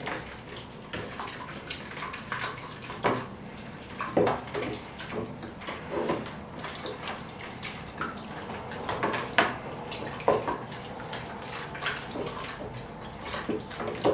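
Liquid sloshing in a plastic bucket as it is stirred by hand with a long wooden stick, with irregular knocks, while caustic soda is mixed in until it dissolves.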